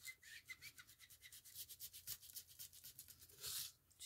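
Faint, quick, rhythmic scrubbing of an ink blending tool dabbed and rubbed over paper, several short strokes a second, with one longer, louder swipe near the end.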